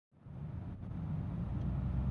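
Low outdoor background rumble that fades in and grows steadily louder.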